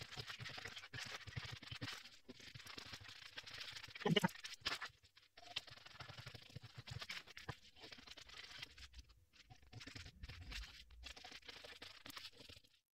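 Scissors cutting through pattern paper in a run of quick snips, with the paper rustling as it is guided; a louder moment comes about four seconds in.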